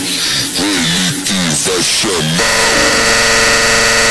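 Edit background music: a melody with gliding, bending notes. About two and a half seconds in it cuts abruptly to a dense, held buzzing chord.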